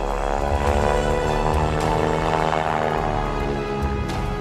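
Background music of sustained, slowly shifting chords.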